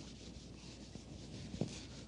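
Whiteboard eraser rubbed back and forth over a whiteboard, wiping off marker drawing: faint, repeated wiping strokes.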